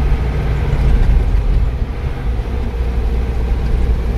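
Engine and road noise of a moving vehicle, heard from inside its open-sided cabin: a steady low drone.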